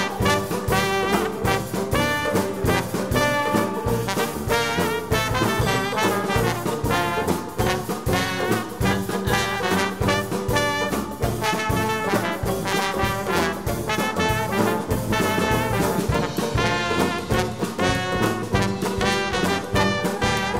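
Live vintage jazz band playing an upbeat swing tune: trombone and trumpet over strummed banjo, drum kit and sousaphone, with a steady beat.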